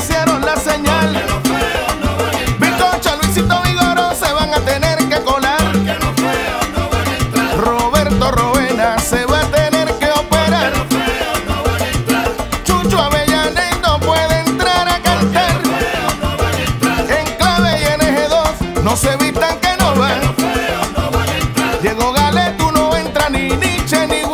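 Salsa music: a full band playing, with a steady, repeating bass and percussion rhythm under the melody.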